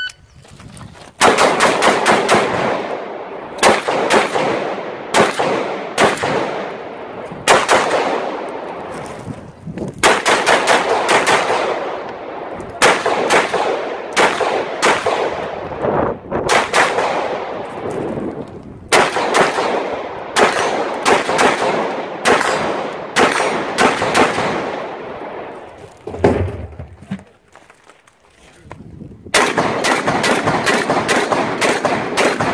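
Shot-timer start beep, then rapid strings of semi-automatic rifle fire, many shots in quick succession in groups with short pauses between, each shot echoing. Near the end the firing stops for about three seconds, with a single low thud, then resumes.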